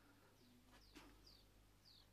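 Faint garden bird calls: three short, high chirps, each falling in pitch, about half a second apart, over near silence. A faint click sounds about a second in.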